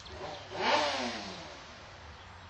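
A car passing by on the street, its noise swelling and then fading over about a second.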